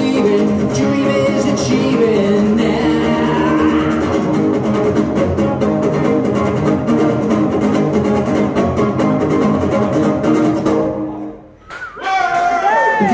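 Two acoustic guitars strummed together through the closing bars of a song, with singing in the first few seconds; the last chord dies away and stops about a second before the end.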